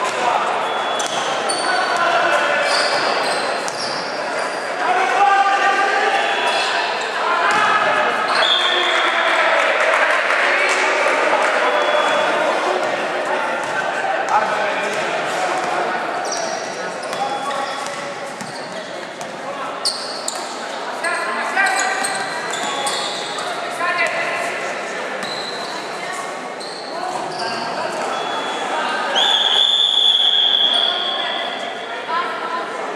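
Indoor basketball game in a gym: the ball bouncing as players dribble, sneakers squeaking on the court, and players and spectators calling out, all echoing in the hall. Near the end a referee's whistle blows once, about a second long.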